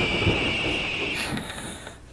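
Edited sound effect for a logo reveal: a rushing noise with a high, steady whine over it, fading away over about two seconds.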